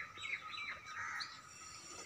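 Small birds chirping faintly in the background: several short, high chirps in the first second or so, then fewer.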